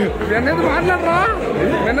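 Men's voices talking animatedly, their pitch swooping up and down, over the steady chatter of a crowded restaurant dining room.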